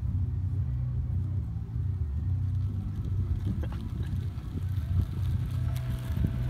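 Small motor of a motorized stand-up board running with a steady low rumble.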